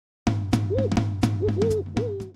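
Intro music sting: a drum beat of sharp hits over a steady low bass note, with short hooting owl-like calls rising and falling between the hits, starting about a quarter of a second in.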